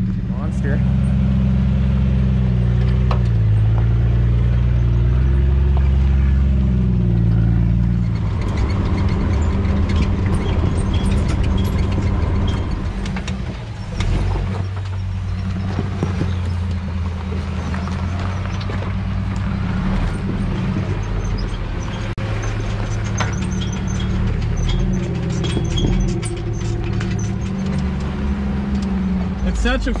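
Lifted off-road 4x4's engine running at low revs as it crawls over a rocky trail, steady for the first several seconds, then rougher and changing. Short knocks and crunches of rock under the tyres come through from about eight seconds in.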